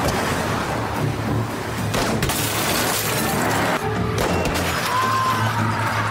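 Car window glass shattering under gunfire: sharp impacts with a burst of breaking glass from about two to four seconds in, over a music score.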